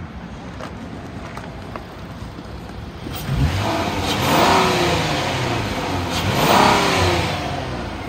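A 2014 Ford Taurus Police Interceptor's 3.7 liter V6 idles for about three seconds, then is revved twice in quick succession. Each rev rises and falls back toward idle, and the seller judges that the motor sounds good.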